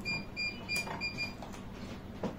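Four short electronic beeps at one high pitch, evenly spaced at about three a second, with a brief knock during the third.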